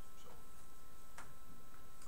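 A single sharp click about a second in, heard over a steady background hum that carries a faint high whine.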